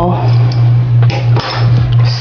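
A steady low hum, with a few light clicks and knocks from a glass perfume bottle and metal tools being handled, about a second and a half in.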